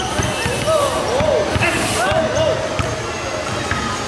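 A basketball being dribbled on a concrete court, with onlookers' voices calling out over it.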